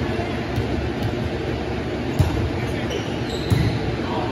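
A volleyball being struck during play in a sports hall: two sharp smacks about a second and a half apart, over steady background noise in the hall.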